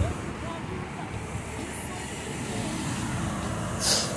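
Steady, even outdoor background rush with no distinct source standing out.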